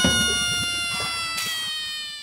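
A single long pitched tone, rich in overtones, sliding slowly lower in pitch and fading away.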